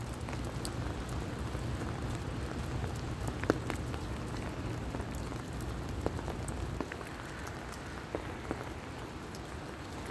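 Steady rain falling on an umbrella held overhead, with scattered sharp drip ticks.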